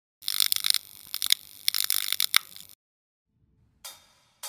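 An intro logo sound effect: bright, high-pitched flickering clicks and shimmer in bursts for about two and a half seconds, then a short silence. Near the end a drum-kit cymbal is struck once and rings down.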